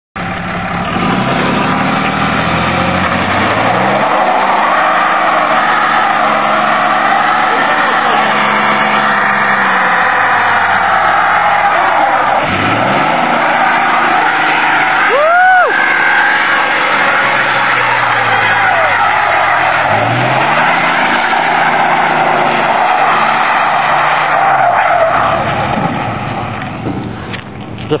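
A Dodge Ram's 6.7 L Cummins inline-six turbo-diesel is held at high revs in a burnout, its rear tyres spinning on the pavement with a steady loud tyre roar. The engine's pitch dips and climbs back three times, and a short rising-and-falling squeal comes about halfway through. The sound eases off near the end.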